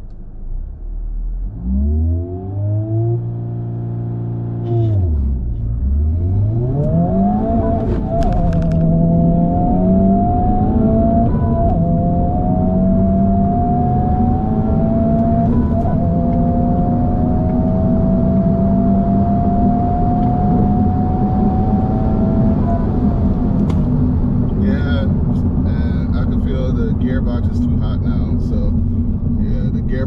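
Honda Civic Type R's turbocharged four-cylinder engine, heard from inside the cabin on a quarter-mile launch. Revs are held, dip as the car pulls away, then climb in several rising pulls with a drop at each manual upshift. It lifts off about 23 seconds in and settles to a steady lower drone.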